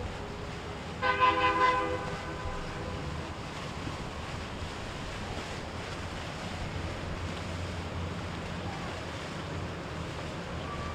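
A horn blows once, a loud held note with several overtones lasting about a second, over a steady low rumble of boat motors and churning water.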